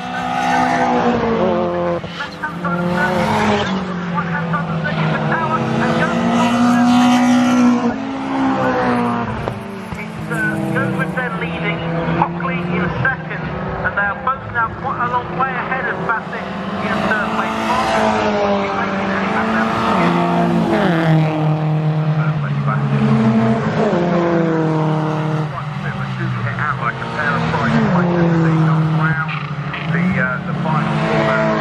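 Peugeot 206 GTi race cars' four-cylinder engines running hard as a pack of cars comes through a corner and past. Several engine notes overlap, rising and falling in pitch over and over as the cars lift, brake and accelerate.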